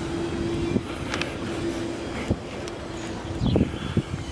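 Wind rushing on the microphone over a steady mechanical hum, with a couple of brief knocks. The hum fades out shortly before the end, where a louder rumble comes in.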